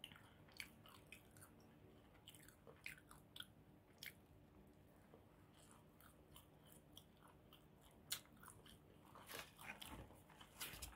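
Faint close-up chewing of a mouthful of bacon cheese pizza: scattered small mouth clicks and smacks, the loudest about eight seconds in and a cluster near the end, over a low steady background hum.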